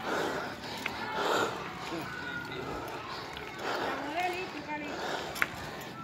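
Faint voices of people nearby, heard in snatches over a steady rush of background noise from riding along a street.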